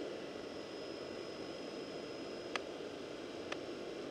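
Bayangtoys X21 quadcopter's brushless motors and propellers spinning at idle on the ground just after arming: a steady soft whir. Two faint ticks about a second apart come in the second half.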